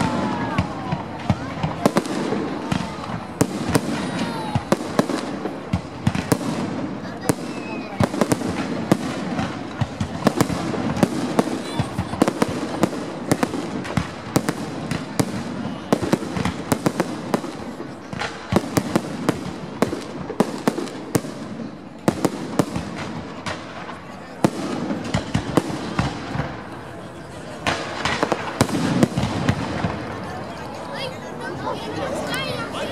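Aerial fireworks shells bursting overhead in a rapid, irregular run of bangs and crackles, with a denser, louder flurry near the end.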